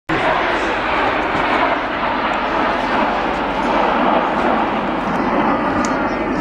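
Steady jet noise from a formation of Alpha Jet twin-engine trainer jets flying overhead, mixed with voices.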